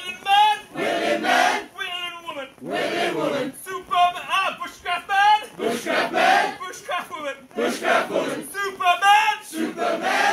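A group of adults singing and shouting a call-and-response song, one voice leading a line and the whole group answering, back and forth several times.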